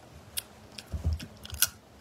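Cooked crayfish shell being cracked and peeled apart by hand: a few sharp cracks and clicks, the loudest a little past halfway through, with a dull thud about a second in.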